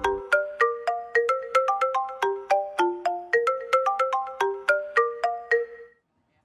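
iPhone ringtone playing for an incoming call: a repeating run of short pitched notes, about four a second, that cuts off suddenly at the end.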